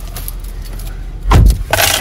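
Steady low hum of a car interior with the engine running, broken about halfway through by a loud thump and then a short rustling noise.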